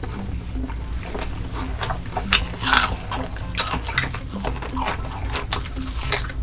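Close-miked wet chewing and lip-smacking of a person eating saucy food, a quick run of sticky mouth clicks with a louder, longer wet smack or slurp between two and three seconds in.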